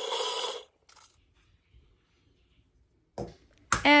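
KitchenAid stand mixer motor whirring as powdered sugar goes in, switched off about half a second in. Near silence follows, then a single light knock near the end.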